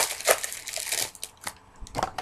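Crinkling and crumpling of a baseball card pack's wrapper being handled, dense for about the first second, then thinning to a few light ticks.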